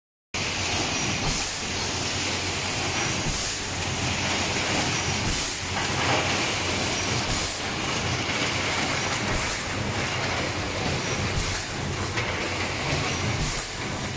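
Six-cavity fully electric PET bottle blow moulding machine running: a steady mechanical clatter and hum, with short hisses of air about every one to two seconds as the blowing cycles go round.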